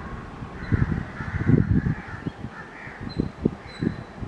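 Harsh bird calls over a run of irregular low thumps and rumbles, the loudest about a second and a half in.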